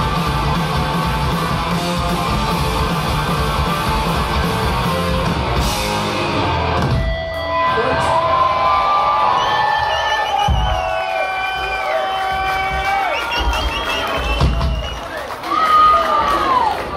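Hardcore punk band playing live with loud distorted guitars and drums, stopping abruptly about seven seconds in. After the stop, guitar feedback and held guitar notes ring out in long, bending tones over a cheering crowd.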